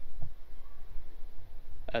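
Low, steady rumbling background noise with a faint click right at the start.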